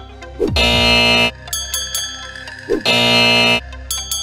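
Upbeat background music with game-show sound effects. Twice, a quick falling swoop leads into a loud wrong-answer buzzer, marking incorrect guesses.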